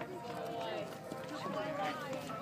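Several people talking at once, their voices overlapping in indistinct chatter.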